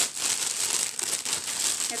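Plastic packaging crinkling and rustling as it is handled, a dense, irregular crackle.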